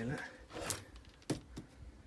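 Brief rustling, then a sharp clack and a smaller one, as an old tennis racket is pulled out of a heap of coiled cables and rope and knocks against them.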